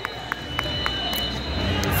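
Gym ambience during a wrestling match: background voices and hubbub with a few light knocks or taps, over a thin steady high-pitched whine.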